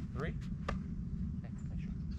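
A thrown baseball caught in a baseball glove: a short sharp pop just under a second in, over a steady low rumble.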